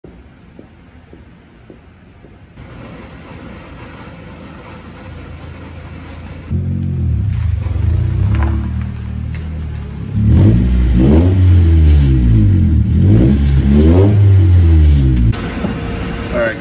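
1999 Honda Civic's four-cylinder engine with a loud exhaust from a pipe broken apart at the catalytic converter. It comes in about six seconds in, revs up and down several times, and cuts off shortly before the end.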